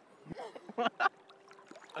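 Short bursts of laughter over soft water sloshing, with a single low thump about a third of a second in.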